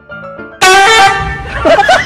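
Light piano music, cut off about half a second in by a sudden, loud horn blast that fades over about a second, followed by a burst of high, snickering laughter: comedy sound effects laid over the clip.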